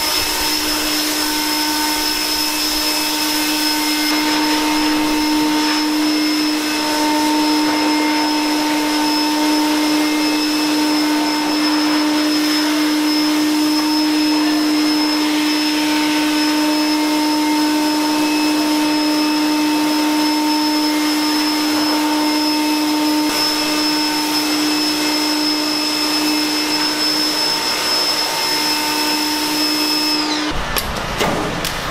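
Pressure washer running steadily, its motor and pump holding one even pitched hum under the loud hiss of the spray on a concrete garage floor.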